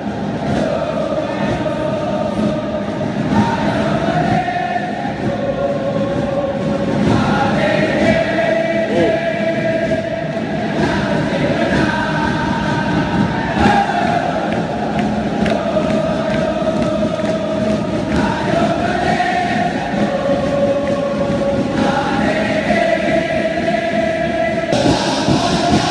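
A huge stadium crowd of football supporters singing a chant together, holding long notes that shift in pitch every few seconds.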